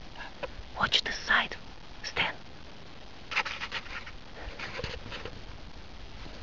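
Hushed whispering in short, breathy bursts.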